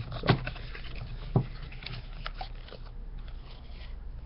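A cardboard box of Panini Score hockey card packs being opened and its packs handled: faint crackling and rustling with a few short clicks, one sharper click about a second and a half in, over a low steady hum.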